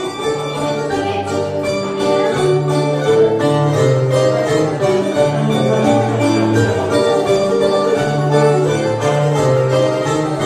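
Rebetiko ensemble playing live: baglamadaki and acoustic guitar with bouzouki, plucked melody over a moving guitar bass line, apparently the instrumental introduction before the singing.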